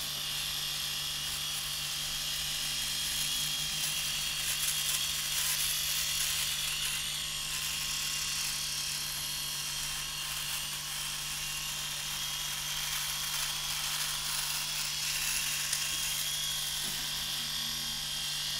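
Philips Series 5000 rotary electric shaver running with a steady motor hum and a fine hiss as its heads are moved over stubble on the cheek and jaw.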